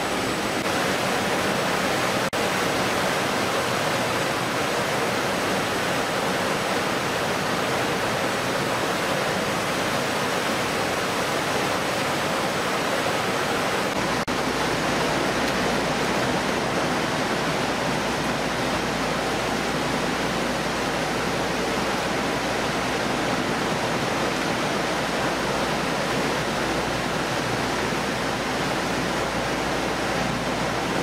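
Steady rush of water sprays and running machinery on a fish-processing line. About halfway through, a low hum joins the wash.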